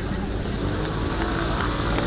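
Steady outdoor street noise of a busy waterfront promenade, a low even rumble of traffic with faint voices of passers-by mixed in.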